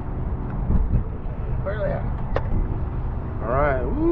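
Boat's outboard motor running with a low, steady rumble, with short voice sounds about two seconds in and again near the end, and a single click between them.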